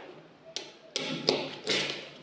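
Small magnetic balls clicking and rattling against each other as a sheet of them is split with a plastic card and pressed back together: a few sharp clicks with short rattles, loudest near the end.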